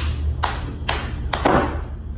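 Hands clapping: four sharp claps about half a second apart, the last the loudest, over a low steady hum.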